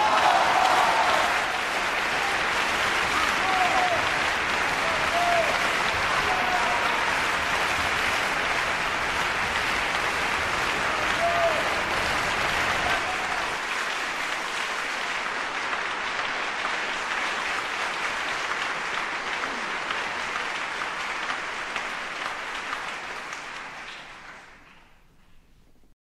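Concert-hall audience applauding at the end of a song, with a few shouted calls from the crowd in the first dozen seconds; the applause fades out near the end.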